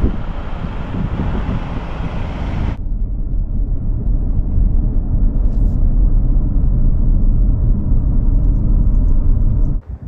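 Moving car's road noise. For about the first three seconds there is a loud, even rush of wind through an open side window. It then changes suddenly to a steady low rumble heard inside the closed cabin, which stops abruptly just before the end.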